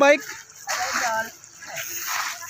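Water splashing and running as bicycles are rinsed in a shallow stream, with people's voices over it.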